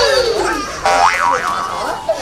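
Cartoon-style comedy sound effects: a loud falling pitch glide at the start, then about a second in a boing-like warble that swoops up and down twice.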